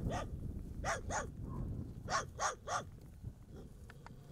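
A dog barking in short barks: two about a second in, then three in quicker succession around two to three seconds in.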